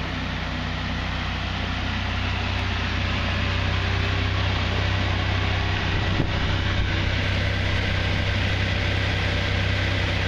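A Dodge Viper SRT10's 8.3-litre V10 idling with a steady low rumble, growing slightly louder over the first few seconds.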